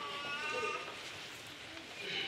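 A faint, drawn-out voice in a large hall that fades away within the first second, leaving low room murmur.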